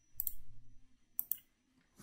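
Computer clicks while choosing a saved login and pressing Next: a quick run of soft clicks in the first second, then two sharp clicks a little after.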